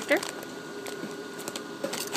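Light, scattered crinkles and clicks from a plastic snack packet being handled in the hands.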